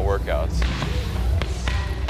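A few dull thuds of gloved punches landing during boxing training, over a steady background music bed, just after a man's voice trails off.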